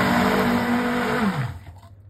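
Immersion blender running in a stainless steel beaker, blending a thin lemon-juice and sugar glaze. It is switched off a little over a second in, and its motor winds down with falling pitch.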